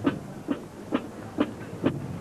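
Marching band drum beat: single percussive strokes struck in a steady march tempo, a little over two a second.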